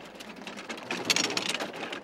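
Bobsled running down an ice track, heard from on board: a dense rattling, scraping rush of runner noise that builds to its loudest about a second in.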